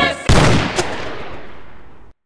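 A single sudden loud bang about a quarter second in, cutting off the music, its rumble fading away over nearly two seconds.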